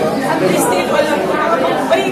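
Several people talking at once in a large room, an indistinct chatter of overlapping voices.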